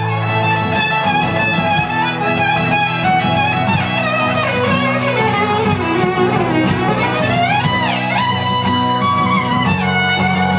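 Live band playing an instrumental passage: fiddle lead over strummed guitar and drums. Midway the fiddle line slides down in pitch and back up.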